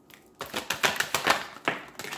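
A tarot deck being shuffled by hand, the cards sliding and slapping through the deck in a quick run of soft clicks that starts about half a second in.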